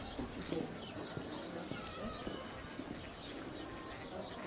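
Wild birds calling around a lake: many quick, high chirps throughout, with a few lower, short calls among them.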